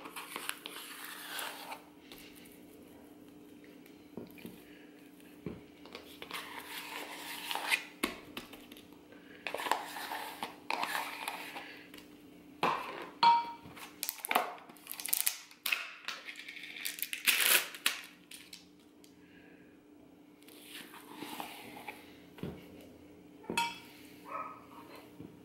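A spatula scraping whipped cream cheese out of a plastic tub and spreading it in a baking dish: irregular soft scrapes and scuffs, with short pauses between strokes. A faint steady hum runs underneath.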